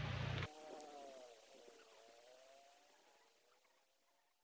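A loud rush of noise with a low hum stops abruptly about half a second in. After it, a faint engine hum dips and then rises in pitch, fading away.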